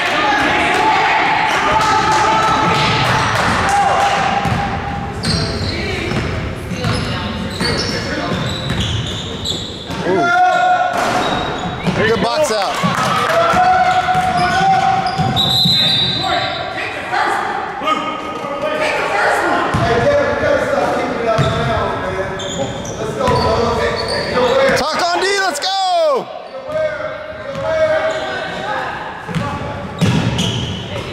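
Basketball game sounds echoing in a gym: a ball bouncing on the hardwood court and indistinct shouts from players and spectators. Twice, about ten seconds in and near the end, sneakers squeak sharply on the floor.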